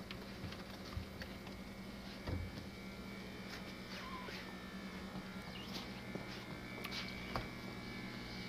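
Faint steady low hum with scattered light clicks and rustles.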